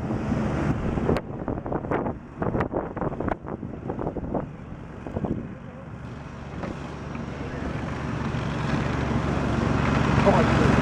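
Dry grass crackling and snapping in a run of irregular sharp crackles, then a low steady rumble that grows louder toward the end.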